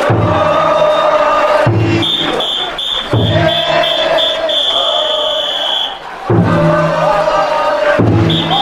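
Big taiko drum on a festival yatai float beaten with slow, heavy strokes while the bearers chant together in long, drawn-out calls. A shrill whistle blows in quick pulses from about two seconds in, then holds one long blast.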